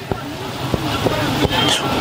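A motor vehicle running and growing steadily louder.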